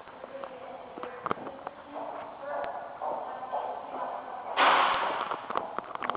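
Footsteps clicking on a hard tiled floor, with faint voices in the background. About three-quarters of the way through, a sudden loud rushing noise breaks in and fades over a second or so.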